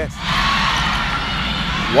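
Volleyball arena crowd cheering: a steady din of many voices.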